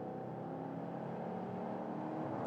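Holden Caprice V's 6.0-litre L77 V8 pulling under acceleration in sport-shift mode, heard from inside the cabin as a steady engine drone over road noise.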